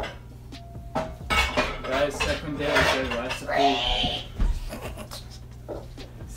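A glass mixing bowl knocking and scraping on a stone countertop as raw meatloaf mixture is kneaded in it by hand, with a short ring of glass about a second in. Voices talk over it in the middle.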